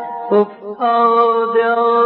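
Male voice singing Persian classical avaz in Dashti mode: a short note about a third of a second in, then a long, steady held note from just under a second in.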